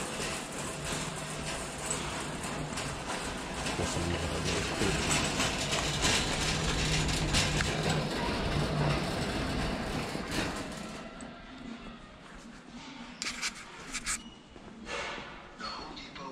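Metal wire shopping cart rolling over a concrete store floor, its wheels and basket rattling steadily with many small clicks; it quiets down after about eleven seconds, leaving a few separate knocks.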